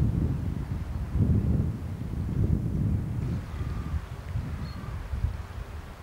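Gusty wind buffeting the camcorder microphone: an uneven low rumble that surges and eases off near the end.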